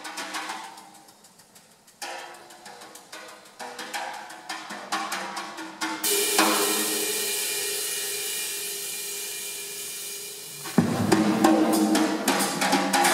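Jazz drum kit solo: a hushed passage of soft strokes that builds up, then a cymbal crash about six seconds in that rings out for several seconds. Near the end the band, clarinet included, comes back in loudly.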